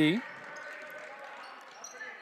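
A basketball being dribbled on a gym's hardwood floor, faint under the hall's general background noise.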